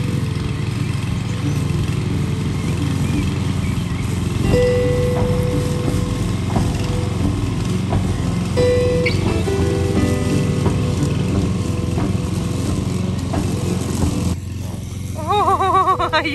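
Petrol walk-behind lawn mower running steadily while cutting grass, with background music over it; the mower sound stops shortly before the end.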